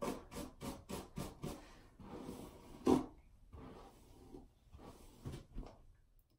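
Hairbrush strokes through long, thick hair: a quick run of short rasping strokes, about four a second, then slower, fainter strokes with one louder one about three seconds in.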